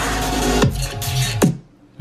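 Electronic dance music played through Micca MB42X bookshelf speakers driven by a Lepai two-channel amp, with a deep bass hit that falls in pitch a little more than once a second. The music stops abruptly about three-quarters of the way through.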